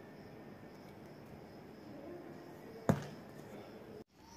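Faint, steady background noise of an open railway platform, broken about three seconds in by a single sharp knock.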